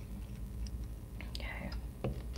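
Low steady hum with a few faint small clicks, and a brief whispered or breathy voice sound about one and a half seconds in.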